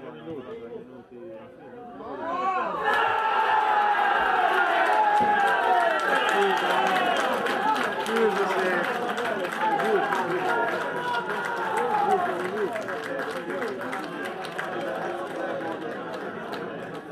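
Small crowd of football spectators and players shouting and cheering a goal, the voices breaking out together about two and a half seconds in and easing off a little towards the end.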